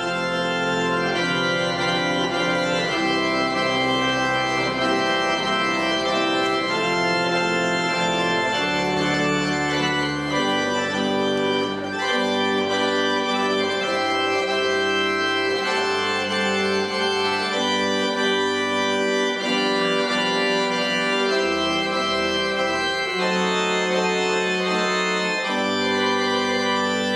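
Church organ playing slow, held chords over a bass line that steps to a new note every few seconds.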